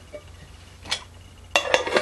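A small metal cooking pot and its lid clinking: one light tap about a second in, then a quick run of metal clinks and scrapes near the end as the lid is fitted onto the pot.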